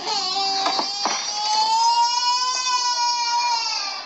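A young child crying: one long, high wail that rises gently in pitch and falls away near the end, with a couple of knocks about a second in.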